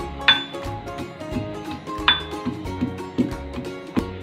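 Pestle pounding ginger and green chillies in a metal mortar: two loud ringing metallic clinks about two seconds apart, over background music with steady tones.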